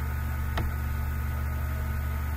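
Steady low electrical hum, with a single short click just over half a second in.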